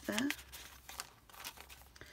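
Paper rustling and crinkling as the coffee-dyed pages, tags and card inserts of a handmade journal are handled and a page is turned, a run of irregular soft crackles.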